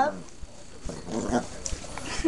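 Chihuahua growling, loudest at the very start and dying away within a fraction of a second into faint, broken sounds, the growl he gives when he is not being petted.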